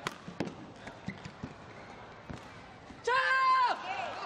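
Badminton play: sharp racket strikes on the shuttlecock and footfalls on the court floor. About three seconds in, a player gives one loud, held shout that drops off at the end, as the rally is won.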